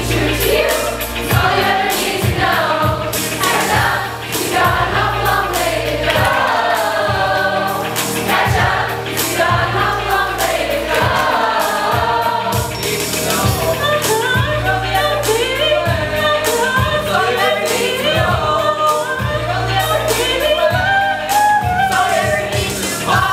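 A group of teenage voices singing a pop song together over accompaniment with a steady beat and bass.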